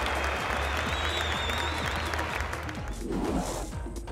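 Crowd applause, thinning and dying away near the end.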